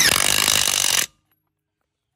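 DeWalt DCF891 cordless 1/2-inch impact wrench hammering on a wheel lug nut, a fast rattling run of impacts that stops abruptly about a second in.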